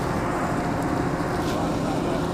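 A diesel engine idling: a steady low rumble heard from inside a tipper lorry's cab.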